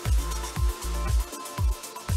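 Melodic house music from a DJ mix: a steady kick drum at about two beats a second over a held bass note, with crisp hi-hats on top.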